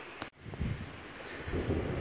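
Wind buffeting the microphone in low rumbling gusts, which cut out briefly about a third of a second in and grow stronger near the end.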